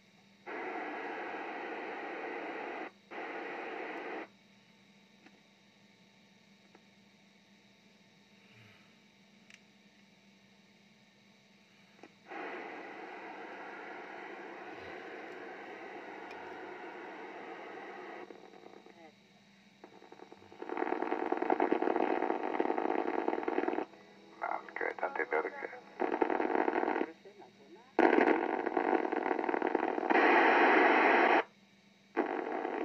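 A Yaesu FT-1802 transceiver's speaker plays received audio, static hiss and radio voices, in bursts that cut in and out abruptly. There are two short bursts near the start, a steadier stretch of hiss in the middle, and louder, choppier bursts in the last third.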